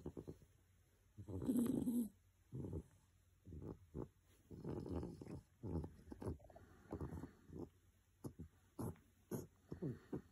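English bulldog asleep on its back with its mouth open, snoring in a string of irregular breaths; the loudest comes about two seconds in.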